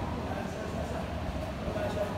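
Steady background noise of a gym: a low rumble and hiss with faint, indistinct voices, and no distinct knocks or impacts.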